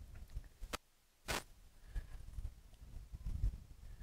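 Wind buffeting a clip-on lapel microphone, an uneven low rumble. Just under a second in there is a click, the sound cuts out completely for about half a second, and a sharp burst follows.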